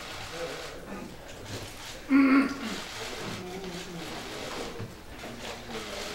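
Indistinct chatter and shuffling of people settling around a conference table, with one short, loud pitched sound about two seconds in.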